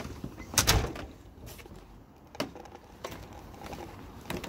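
An exterior door unlatched and pushed open: a latch click, then the loudest clatter just under a second in. A few lighter knocks and clicks follow.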